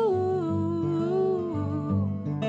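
A woman humming a long, wordless melody line that slides slowly downward in pitch, over her own acoustic guitar accompaniment.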